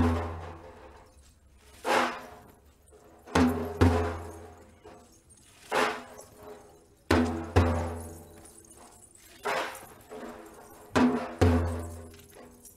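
Large Persian frame drum (daf) beaten by hand in a slow, heavy rhythm: deep strokes about every one and a half to two seconds, several coming in quick pairs, each ringing out and fading before the next.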